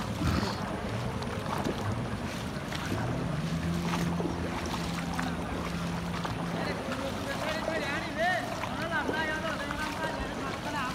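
Floodwater swishing and splashing around people wading through it, with wind buffeting the microphone and voices in the background. A steady low hum runs for a few seconds in the middle.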